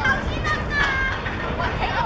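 Young players' voices shouting and calling out across an open football pitch during play, over a steady low background noise.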